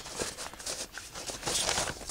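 Soft rustling and scuffing of a paper sheet being handled, with a few faint clicks and a brief burst of louder rustle near the end.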